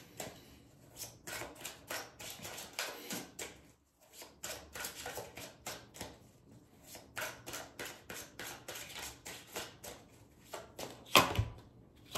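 Tarot cards being handled: a steady run of light clicks and taps as cards are drawn from the deck and laid down, with one louder slap about eleven seconds in.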